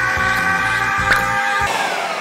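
Countertop blender running steadily, puréeing a thick sweet potato and cream cheese batter; about three-quarters of the way through it is switched off and the motor winds down, its whine falling in pitch.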